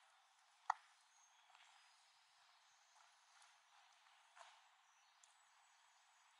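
Near silence: a faint steady hiss, with one short sharp click a little under a second in and a much fainter tick later.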